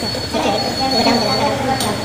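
A high, steady metallic squeal or ring with rough scraping under it, from metal tools and parts being worked during a tractor clutch plate replacement. A couple of light metal clicks come near the end.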